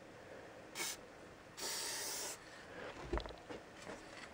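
Low-pressure Sigma aerosol spray paint can fired through a German Outline #4 cap: a short burst of hiss, then a longer hiss of under a second as the paint goes on as a dot and then a line.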